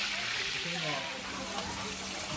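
Chopped onions frying in oil in a large metal pan, a steady sizzle, with a voice speaking faintly about midway.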